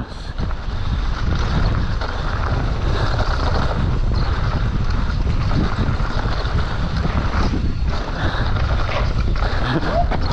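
Mountain bike riding fast down a dirt singletrack: steady rush of wind on the microphone mixed with the tyres rolling and skimming over the dirt, with small knocks from bumps in the trail.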